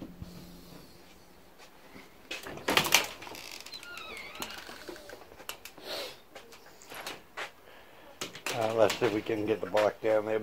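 A door clattering about two and a half to three seconds in, with scattered knocks and a brief high squeak after it, then a man's voice near the end.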